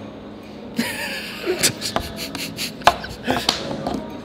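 Several sharp clicks of a folding pocket knife being flicked open and shut and fidgeted with, mixed with breathy laughter.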